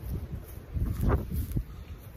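Wind buffeting a phone's microphone, a low uneven rumble, with a couple of faint knocks a little after one second in.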